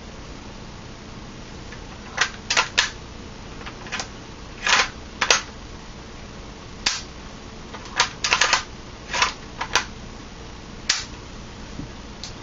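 Scattered clicks and knocks from handling a KJW M700 airsoft bolt-action rifle, some coming in quick clusters of two or three, starting about two seconds in.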